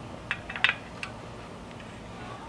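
A few sharp metallic clicks from a spoke wrench on a bicycle spoke nipple as a spoke is turned to true the wheel, bunched in the first second with the loudest about two-thirds of a second in.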